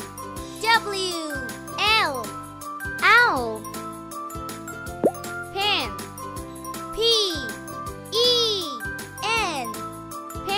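A child's voice calling out short letters and words in a sing-song, one about every second, over light children's background music.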